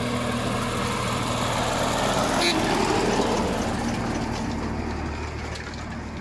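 Diesel farm tractor pulling a trailer, driving past close by. The engine runs steadily, growing louder until about halfway through and then slowly fading.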